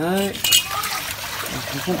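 Water pouring and trickling out of a tipped plastic basin onto a wet tiled floor, a steady running sound.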